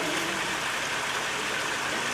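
Steady rushing noise with no clear pitch.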